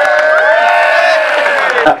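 Crowd cheering and whooping for the winning team, several voices holding drawn-out shouts over one another, dying down near the end.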